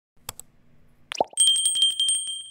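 Subscribe-button sound effect: a quick double mouse click, a short pop, then a small bell ringing rapidly, about ten strikes a second, its high ring carrying on.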